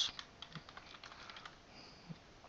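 Computer keyboard typing: a quick run of faint keystrokes as a short word is typed in.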